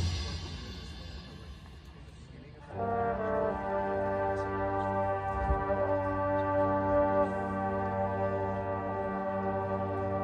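Marching band: the preceding loud drum hits die away, then about three seconds in the brass section enters with a long held chord that sustains to the end.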